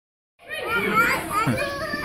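Young children's voices, chattering and calling out as they play, starting about half a second in.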